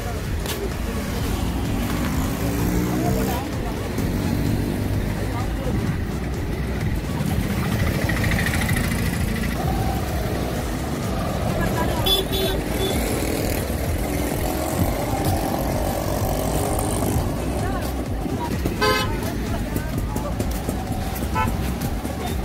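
Busy street traffic: auto-rickshaw, scooter and car engines running, with a few short horn toots, one about twelve seconds in and another near nineteen seconds, over the voices of passers-by.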